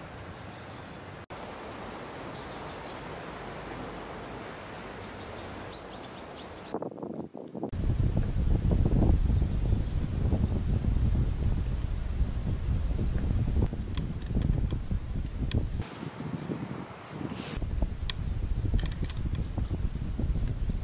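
Outdoor ambience among trees: a soft, steady hiss of wind in the leaves, then, after a cut about seven seconds in, wind buffeting the microphone with an uneven low rumble that rises and falls.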